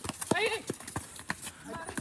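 Players' feet and the ball hitting a concrete court during a street football game: a string of irregular sharp knocks and slaps, with a faint voice briefly.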